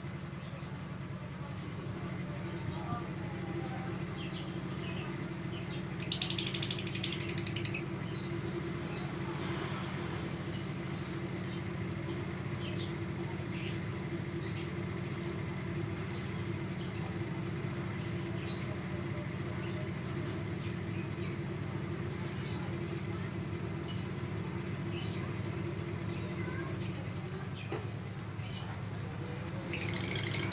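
Caged lovebird giving short, scattered high chirps, with a louder chattering burst a few seconds in. Near the end comes a rapid run of loud, shrill calls at about four a second. A steady low hum runs underneath.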